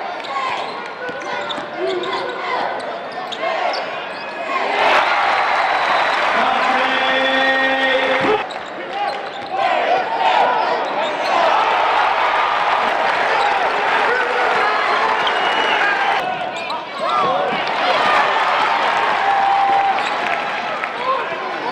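Live basketball arena sound: crowd noise and voices, with a ball dribbling on the hardwood court. About seven seconds in, a steady pitched tone is held for roughly a second and a half. The sound changes abruptly a few times where clips are joined.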